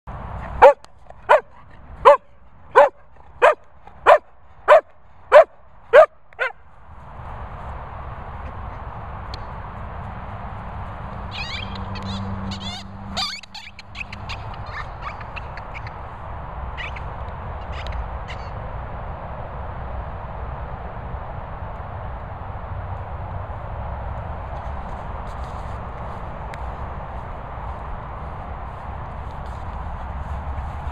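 A sprocker spaniel squeaking a squeaky toy in its jaws: about nine loud, sharp squeaks at a steady pace, roughly three every two seconds, which stop after about six seconds. Steady outdoor wind noise follows.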